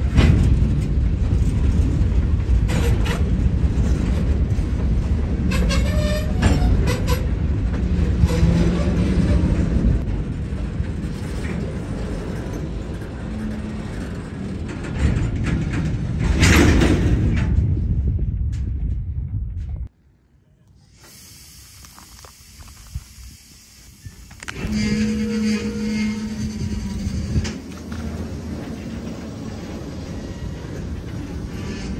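Freight cars rolling past on the rails: a steady rumble and clatter of steel wheels, with occasional brief squealing tones. About two-thirds through the sound drops away suddenly, then comes back a few seconds later.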